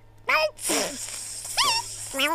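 Cartoon sound effects: a short, falling animal-like cry just after the start, then a steady hiss of a spurting water stream from about half a second in, with a brief rising-and-falling squawk near the end.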